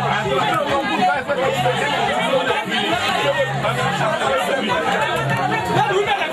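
Several people talking at once in a room, their voices overlapping into chatter.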